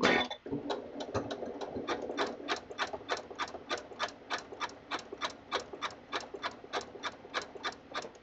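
Janome MC9450 computerized sewing machine sewing a dense satin stitch, a narrow zigzag at a very short stitch length, at a slow steady speed. A motor hum runs under a regular click about four times a second, and the machine stops just before the end.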